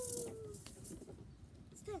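A child's voice holds one drawn-out note that sags slightly in pitch and ends about half a second in. After a quiet stretch comes the spoken word "ten" at the very end.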